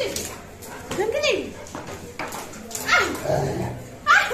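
Pet dog barking twice in play, two short calls about two seconds apart.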